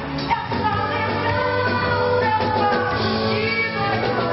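A woman singing lead vocals live through a microphone over a full band with drums, playing Brazilian pop-rock.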